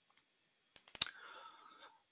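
Two sharp computer-mouse clicks about a quarter second apart, a little under a second in, followed by faint low noise.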